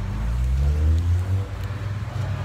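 A steady low rumble, with the bulky costume armour and gear rubbing as a person squeezes into a car seat. A faint strained voice rises briefly about halfway through.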